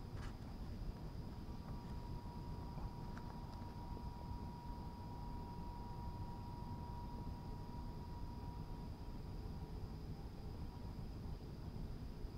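Quiet outdoor ambience: a steady low rumble with a faint thin tone that fades out about nine seconds in, and a faint high whine throughout.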